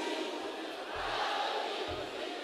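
Steady din of a large concert crowd in a hall, many voices blended into one even noise, with two soft low thuds about a second apart.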